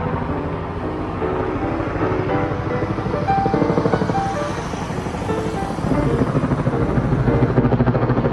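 A helicopter passing overhead, its rotor beating in a fast, even chop that grows louder over the last two seconds, under background music of sustained melodic notes.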